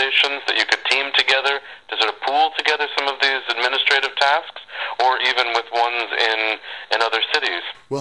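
A man talking over a telephone line in a thin, narrow-band voice, with a few short pauses.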